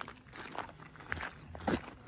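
A person biting into a ripe purple fig and chewing: quiet, soft mouth sounds with a few light clicks and a slightly louder bite near the end.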